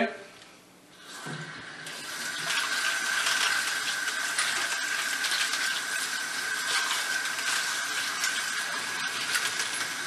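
Utility-sink faucet running water over a handful of brass rifle cases being rinsed in the hands, starting about a second in and then running steadily, with a steady high whistle in the flow.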